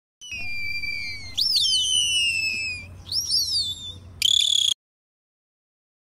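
Dolphin whistles recorded underwater: a long falling whistle, then several quick rise-and-fall looping whistles, ending in a short loud squeal that cuts off suddenly.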